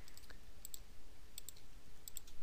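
Several light, quick clicks of a computer keyboard and mouse, some in close pairs, as text is copied and Notepad is opened.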